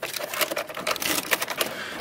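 Ratchet wrench clicking rapidly and unevenly as a panel bolt is backed out.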